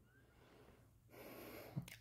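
Near silence, then a woman's quiet in-breath through the mouth in the second half.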